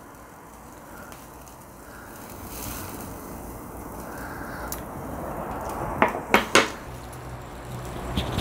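Meat skewers sizzling over charcoal on a small tabletop grill's wire mesh, a steady sizzle that slowly grows louder. Several sharp metallic clicks in the second half, of tongs against the grill and skewers.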